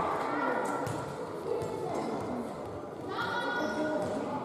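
High-pitched children's voices shouting and calling in an indoor sports hall, with one long, high call about three seconds in.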